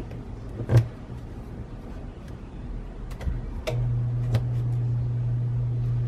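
Heat-resistant tape being torn off and pressed onto paper: a few short clicks and a sharper knock a little under a second in. A steady low hum starts suddenly a little past halfway and keeps going.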